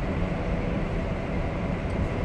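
Steady low drone of a Peterbilt 579 semi truck under way: engine and road noise heard from inside the sleeper cab.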